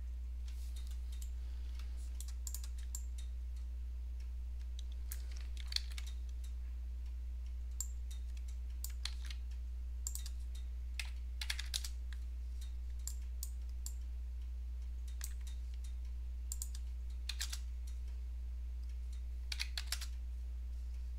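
Scattered clicks of a computer keyboard and mouse, single clicks and short clusters with pauses between, over a steady low electrical hum.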